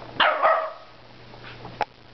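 West Highland white terrier giving two quick, loud barks in play at a cat. A sharp click follows near the end.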